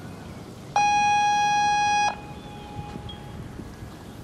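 Show-jumping arena's electronic start buzzer sounding one steady tone for about a second and a half, the signal for the rider to begin the round. A faint echo of the tone trails off afterwards.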